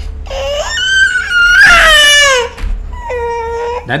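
A child crying in three long, high-pitched wails: the first rises, the loudest falls away, and the last is held steadier.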